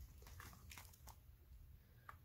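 Faint crunching of a cat chewing dry treats: a few soft, crisp clicks, mostly in the first second.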